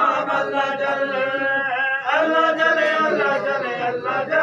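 A group of men's voices chanting together in unison, a Shia mourning chant for Imam Hussain, in two long phrases with a brief break about halfway.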